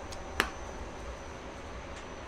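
Steady low hum of a powered-up Doosan CNC lathe and the machine shop around it, with a faint high whine. A single sharp click sounds about half a second in.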